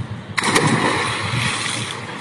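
A man diving head-first into a swimming pool: a sudden splash about half a second in, then churning, sloshing water that slowly eases as he surfaces.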